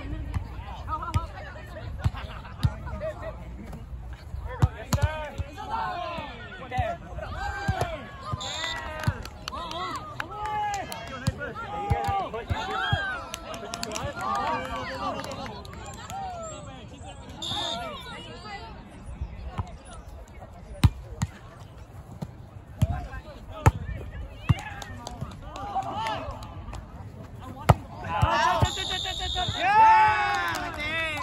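Volleyball being played: sharp slaps of hands and forearms striking the ball every few seconds, over players' voices talking and calling, with the voices getting louder near the end.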